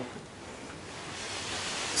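Low steady hiss that swells into a soft, even rustling noise in the second half, without any distinct knocks or clicks.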